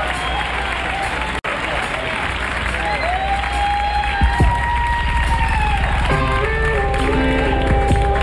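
Live rock-concert audience applauding and cheering at the end of a song, with a split-second dropout in the broadcast recording about a second and a half in. Toward the end, steady held keyboard chords start the next song while the crowd noise carries on.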